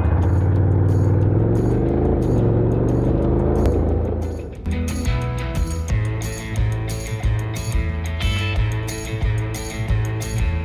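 Honda NC750X parallel-twin motorcycle engine running on the move, its pitch climbing for a couple of seconds, with background music over it. About four and a half seconds in the engine sound drops out, leaving only the music with its steady beat.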